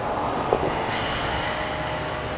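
Steady room noise with one soft thud about half a second in, as feet and dumbbells come down from a dumbbell jump shrug.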